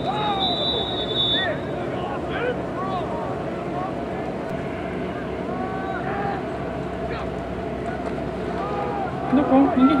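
Several distant voices calling and shouting across an open field over a steady low background noise, with a louder, closer voice near the end.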